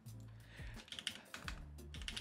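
Computer keyboard typing: a quick, faint run of key clicks starting about half a second in.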